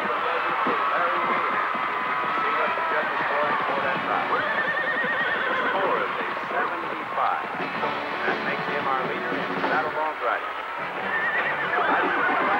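Horses whinnying several times over a steady crowd hubbub in a rodeo arena.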